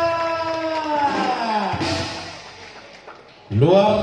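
A man's voice holding one long call that falls slightly in pitch and fades out by about two seconds in. Near the end a second short burst of voice starts.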